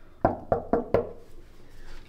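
Knuckles knocking four times on a hotel room door, in a quick rhythm.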